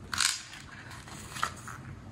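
Page of a paperback book turned by hand: a short crisp rustle of paper near the start, then a fainter brush of paper about a second and a half in.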